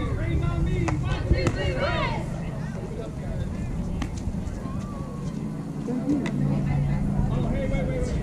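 Voices calling out across a youth baseball field: bursts of high-pitched shouting and chatter in the first two seconds and again near the end. Underneath runs a steady low outdoor rumble, with a few sharp clicks.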